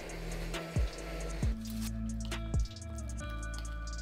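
Background music: a chill electronic track with held synth chords and deep kick drums every second or so.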